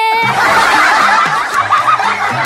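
A group of people laughing and snickering together, loud and continuous, with a low bass line underneath.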